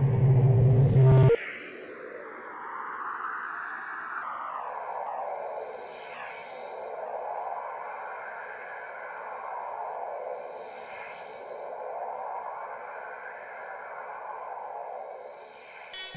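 Sampler-made experimental electronic music. A heavy low part cuts off about a second in, leaving a held drone of a few steady tones under filtered noise that swells and fades in slow waves about every two seconds.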